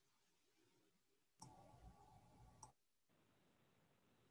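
Near silence, with two faint clicks a little over a second apart and faint background noise between them.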